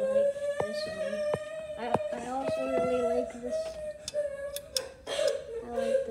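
A person humming a long, slightly wavering note without words, broken off a few times, over scattered light clicks and taps.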